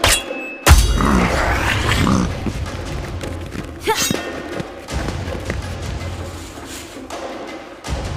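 Animated-fight sound effects over dramatic background music. It opens with a sharp metal strike that rings briefly, from an axe hitting a cage, and a heavy crash follows a moment later. A charging boar-like monster and a rapier fight come after, with scattered thuds and clashes, the loudest strikes coming about four and five seconds in and at the end.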